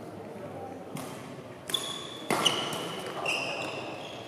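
Badminton rally in a hall: several sharp racket strikes on the shuttlecock, the loudest a little over two seconds in, with high squeaks of shoes on the court between them.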